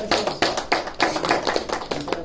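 Small audience applauding: many hand claps in quick, irregular succession.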